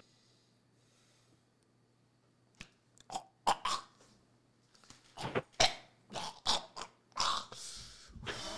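Stifled laughter held back at close microphones: short muffled snorts and puffs of breath that start a few seconds in after a hush and come in an irregular run.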